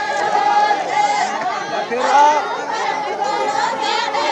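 Crowd of many people talking at once, overlapping voices with no break.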